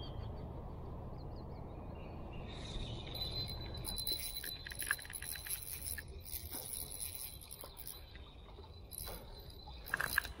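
Small ultralight spinning reel being cranked as a hooked roach is reeled in, giving a fast run of fine ticks from the turning gears with a thin steady whine, from a couple of seconds in until near the end. A low rumble comes before it.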